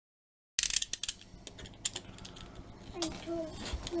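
Hands handling a cardboard box: a quick run of sharp clicks and taps about half a second in, then scattered faint clicks.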